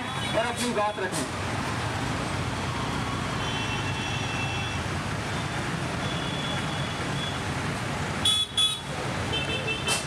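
Steady street traffic noise, with vehicle horns honking three times: about three and a half seconds in, around six seconds, and just before the end.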